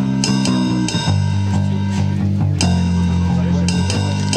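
A band playing: electric bass guitar and keyboard, with long low notes changing about once a second over a sharp, ticking beat.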